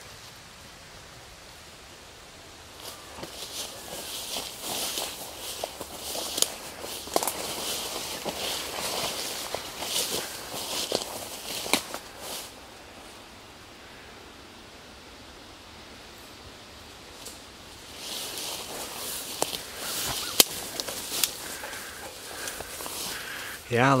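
Footsteps pushing through tall grass and brush, with leaves and stems brushing and crackling against the walker. It comes in two stretches, a few seconds in and again near the end, with a quieter pause between.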